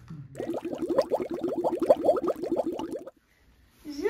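Cartoon-style bubbling sound effect: a quick run of pitched bloops, about eight to ten a second, lasting close to three seconds and cutting off abruptly.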